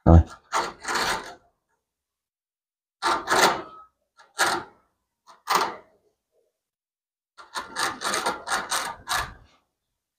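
Rabbit crunching a piece of dry bread: short bouts of crisp chewing with pauses, and a longer run of quick crunches near the end.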